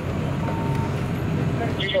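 Steady low rumble of a fire engine's diesel engine running at the fireground, with one short beep about half a second in.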